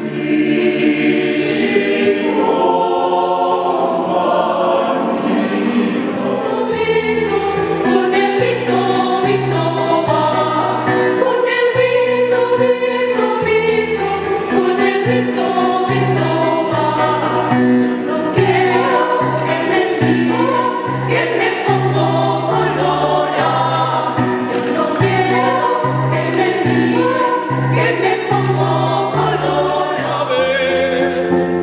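A choir singing, men and women together. About seven seconds in, a low bass line in short repeated notes joins underneath the voices.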